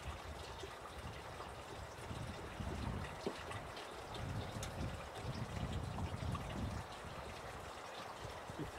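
Faint steady outdoor rushing noise, with low rumbling swells that come and go through the middle.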